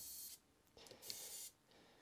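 Faint whir of a Wheeltop EDS TX wireless electronic front derailleur's motor moving the cage in a shift, lasting under a second, with the derailleur shifting properly again after recalibration.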